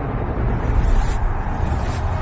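Sound-designed logo sting: a deep bass rumble with two airy whooshes, about a second in and near the end.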